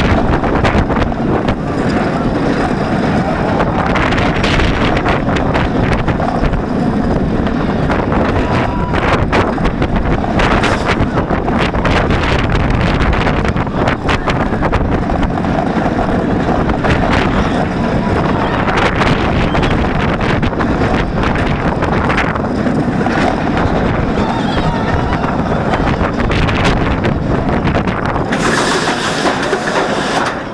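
B&M floorless roller coaster (Batman: The Dark Knight) train running through its course: heavy wind rush on the rider-held camera's microphone over the rumble of the train on the track. A brief brighter hiss comes near the end.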